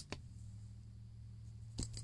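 A click as the inverter's remote power button is pressed, then a faint steady low hum, with a soft click or two near the end.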